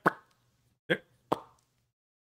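A man making three short popping sounds with his mouth, imitating darts being thrown. The first comes at once, the other two close together about a second in.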